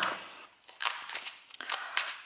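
A deck of tarot cards being shuffled by hand, overhand, with a few short papery rustles and flicks as packets of cards slide and drop onto the rest of the deck.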